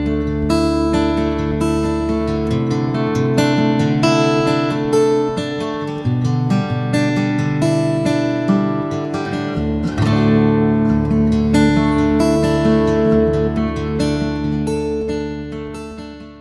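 Orangewood Echo limited-edition dreadnought acoustic guitar, solid spruce top with pau ferro back and sides, played fingerstyle: plucked melody notes over ringing bass notes. The last chord fades away near the end.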